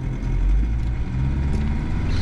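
A 1987 Toyota Land Cruiser's engine pulling away in first gear with a manual transmission, the revs climbing as it accelerates.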